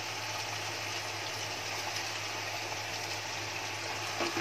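Steady, even sizzle of diced potatoes and onions frying in oil, muffled under a fresh heap of chopped spinach, over a constant low hum.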